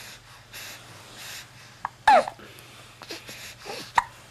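Soft, close breathing puffs from young children, with one short vocal squeak falling in pitch about two seconds in and a brief click near the end.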